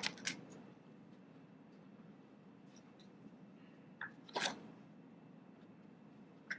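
Faint courtroom room tone during a pause in questioning, with a small click near the start, a faint tick about four seconds in, and a brief rustle or sniff-like noise just after it.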